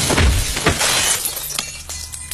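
Glass shattering as a body crashes onto a concrete floor: sharp crashes in the first second, then shards clinking and scattering as they settle.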